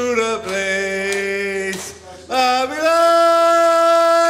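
A man singing two long held notes without words or guitar, the second rising slightly and held from about halfway through.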